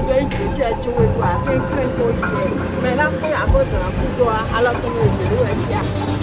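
A high, wavering voice without words, wailing or keening, over a steady low hum.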